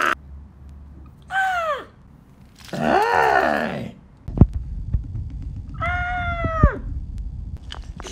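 Three high-pitched, wordless cries from a person's voice, each arching up and falling away at the end, the middle one the longest. From about four seconds in there is a low handling rumble with a few knocks as the camera is moved.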